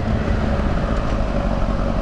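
A motor vehicle on the move: a steady, loud, low engine and road rumble with a hiss above it that holds even through the whole stretch.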